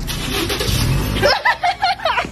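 Steady noise of street traffic, with a low rumble. About a second and a half in, a few short high-pitched calls follow.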